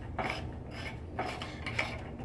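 Quiet metal-on-metal rubbing as a hot tap tool's brass threaded sleeve is turned by hand off its adapter, with a few light clicks.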